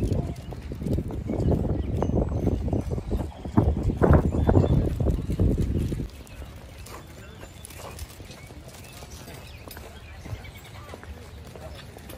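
Footsteps of hard-soled shoes on wet pavement as people walk, under a loud low rumble that stops suddenly about six seconds in, leaving quieter outdoor background.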